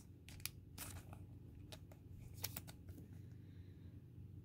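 Faint, scattered ticks and rustles of trading cards being handled, barely above the room's low hum.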